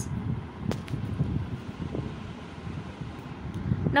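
Steady low-pitched background noise with a faint click a little under a second in.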